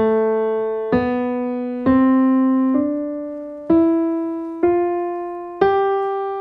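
Piano sound played on a keyboard: seven single notes, A, B, C, D, E, F and G, struck one at a time about a second apart in a rising step-by-step line, each ringing and fading until the next.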